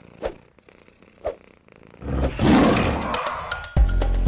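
A big-cat roar sound effect, loud and lasting about a second and a half, starts about two seconds in. Two short hits about a second apart come before it. Music with a steady beat starts just before the end.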